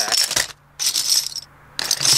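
Metal crown bottle caps clinking and clattering as a hand stirs through a bin full of them, in short bursts with two brief pauses.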